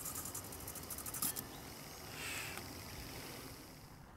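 Felt-tip pen scratching on a paper disc spun by a small solar-powered DC motor, a faint rapid high ticking that stops about a second and a half in, when the pen lifts off.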